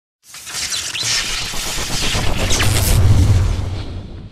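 Logo-intro sound effect: a swelling sweep of noise with a deep boom building beneath it, loudest about three seconds in, then fading out.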